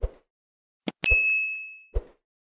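End-card sound effects: short mouse-click sounds, then a single bright bell ding about a second in that rings out and fades, with another click at the end.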